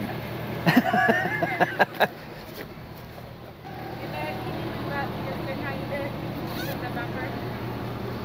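A vehicle engine idling with a steady low hum, under voices, with a few sharp clicks in the first two seconds.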